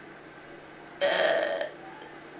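A short throaty vocal noise, like a breathy grunt or clearing of the throat, about halfway through and lasting about half a second, in a pause between phrases of speech.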